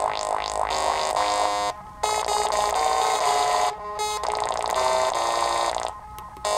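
littleBits Synth Kit modular synthesizer playing a fast run of short electronic notes that step up and down in pitch, with upward sweeps in the upper tones during the first second. The notes break off briefly about two seconds in and again about four seconds in.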